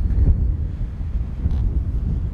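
Wind buffeting the microphones: an uneven, fluttering low rumble.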